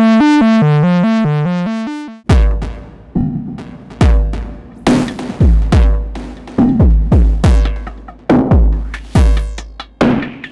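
Eurorack synth oscillator playing a pitch sequence through the Pas-Isel low-pass filter, resonance set to a strong peak and gain pushed for a fuzzy, saturated tone, stepping about four notes a second. About two seconds in it stops, and a heavily driven, modulated drum-machine beat through the same filter takes over, with booming kicks that drop in pitch.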